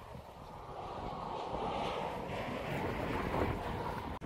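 Wind: a steady rushing noise that swells after about a second.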